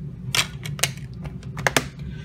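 Sharp plastic clicks of a DVD keep case being handled, the disc and case snapping: about four clicks, two of them close together near the end.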